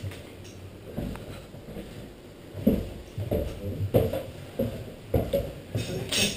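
Faint, soft knocks and rustles of a climber's rope and gear as he rappels down a rope on a Grigri belay device. They come about every half second in the second half.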